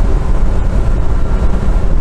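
Cabin of a GAZ-69 with a swapped Toyota 5VZ-FE 3.4-litre V6 pulling on at speed under full throttle: a steady, loud low drone of engine and exhaust, with wind and road noise coming in through the canvas roof.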